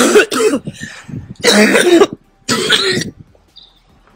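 A woman coughing and clearing her throat in three harsh bursts, a sign of the sore throat she has just complained of.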